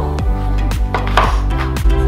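Upbeat background music with a steady beat, over the knife chopping onion on a wooden cutting board.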